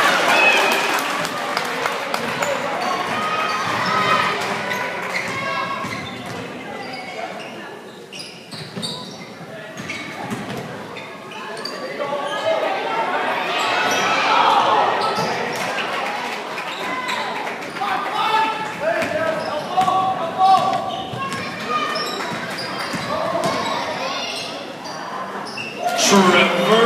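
Basketball game sounds in a gymnasium: a ball bouncing on the hardwood floor amid indistinct chatter and calls from spectators, all echoing in the hall. The crowd noise dips about a third of the way in, then swells to its loudest about halfway through.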